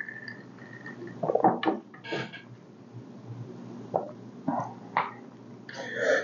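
Quiet mouth sounds of a person tasting a drink: a few short lip smacks about a second and a half in, a short breathy slurp about two seconds in, and small smacks near the end.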